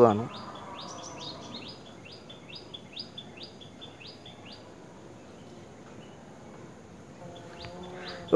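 A bird chirping repeatedly in the background: short high chirps, about two a second, which stop a little past halfway.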